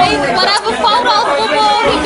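Human voices talking and chattering at a loud level, with no words clear enough to make out.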